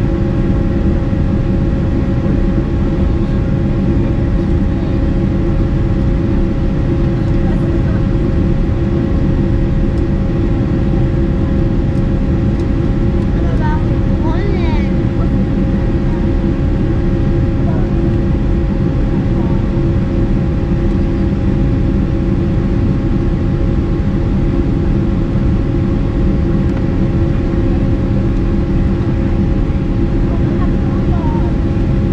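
Boeing 747-400 cabin noise in flight: the steady drone of the jet engines and rushing airflow heard through the fuselage, with several steady whining tones held at one pitch.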